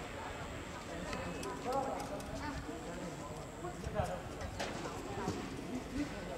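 Several people talking at a distance, with scattered knocks and clacks, a sharp one about four seconds in.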